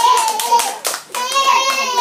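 A few hand claps over a child's high, drawn-out sing-song voice.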